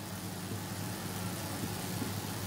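Steady low hum with a faint hiss, the room's background noise.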